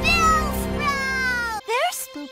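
A cartoon Pokémon creature's high-pitched voiced cry over background music: it rises, holds, then slides down in one long falling glide. The music cuts off about one and a half seconds in, and a short rising yelp follows.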